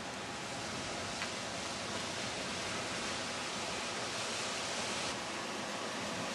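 Steady rushing of sea surf breaking on a rocky shore, an even noise with no separate waves standing out.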